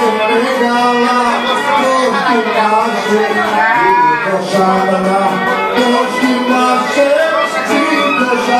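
Live Cretan music: a Cretan lyra bowing a continuous melody with accompaniment, the notes moving steadily with some sliding turns in the middle.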